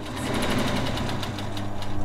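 Sewing machine running, its needle stitching in a quick, even rhythm over a steady motor hum.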